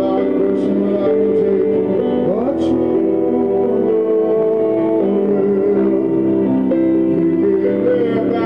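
Stage keyboard played live through a PA in a piano style, slow chords held steadily.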